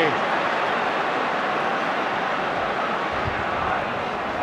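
Stadium football crowd noise, a steady, even wash of many voices with no single sound standing out.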